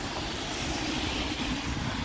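A car passing close on a wet road: a steady hiss of tyres on wet asphalt that swells midway and then eases off, over a faint low hum.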